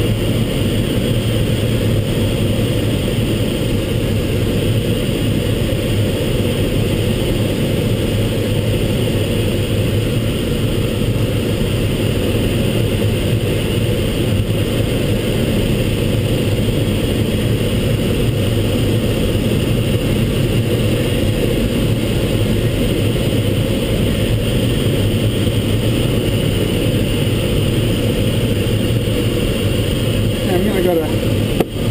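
Steady rush of air past the cockpit of a Mini Nimbus sailplane in unpowered gliding flight, a constant low-pitched noise that stays level throughout.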